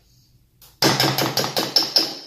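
A metal serving spoon knocking rapidly against the rim of a large aluminium cooking pot, a quick run of loud, ringing metallic knocks starting about a second in.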